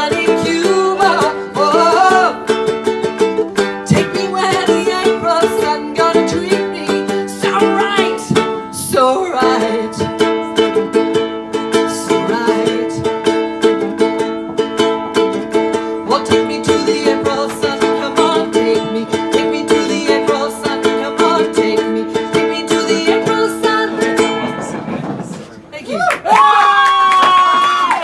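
Solo ukulele strummed in a steady rhythm, with a voice singing over it during the first several seconds. The strumming dies away just before the end.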